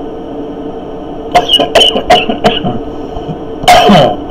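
A man chuckling: four or five short, breathy bursts about a third of a second apart, then a louder burst near the end, over a steady background hum.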